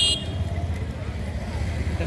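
Street background noise with a steady low rumble and faint voices; a vehicle horn toots briefly right at the start.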